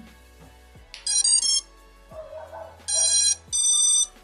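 Brushless motors of an FPV racing drone beeping their ESC startup tones as the LiPo is plugged in: a quick run of short notes about a second in, then two longer beeps near the end. All the motors beeping is the sign that the ESCs, motors and flight controller are working.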